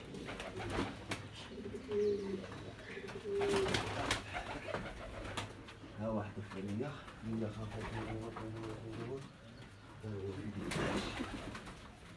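Domestic pigeons cooing, several low drawn-out coos one after another, with occasional clicks and rustles.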